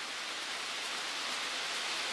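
HO scale model passenger train rolling past on the track: a steady, even hiss of metal wheels on rail, with no separate motor hum or clicks.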